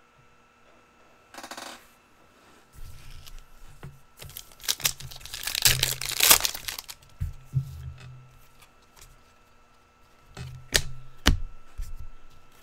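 Trading-card pack wrappers being torn open and crinkled, with the cards slid out and handled in sharp clicks and snaps; the rustling is loudest in the middle.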